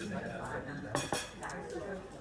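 Clinks and clatter of dishes and cutlery, with a few sharp clinks about a second in, over background chatter in a pub.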